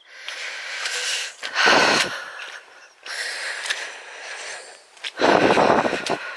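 A woman's heavy, wheezy breathing close to the microphone while walking, with two loud breaths, one about two seconds in and one near the end, and softer ones between. Her breathing is laboured from a chest complaint she likens to asthma.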